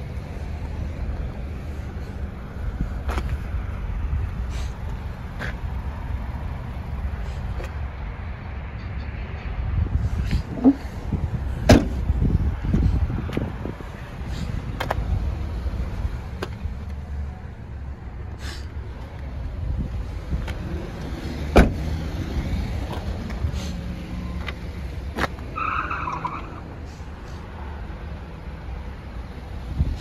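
Car door latches on a 2015 Subaru Forester clicking open, two sharp loud clicks, over a steady low rumble with scattered lighter clicks and knocks.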